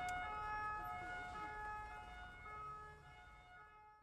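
Police car siren sounding in steady tones that change pitch step by step, fading away toward the end.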